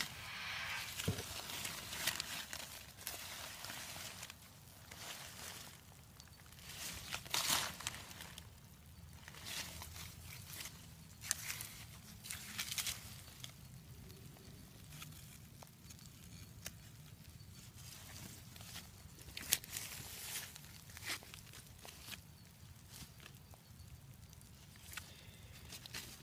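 Faint, irregular rustling and scratching of a tool being worked through damp worm-bin bedding of food scraps and paper, with a few louder scrapes scattered through.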